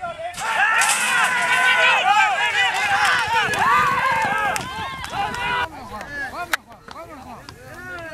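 Spectators at a horse race shouting and cheering the runners on, many voices yelling at once, loudest for the first five or six seconds, then thinner shouts. A single sharp crack about six and a half seconds in.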